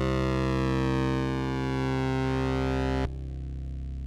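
Synthesizer drone music: a sustained low tone thick with overtones, its upper partials gliding in pitch. About three seconds in, the bright upper part cuts off suddenly, leaving a quieter, duller low drone.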